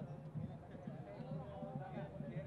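A campaign song: a singing voice over a fast, steady drum beat.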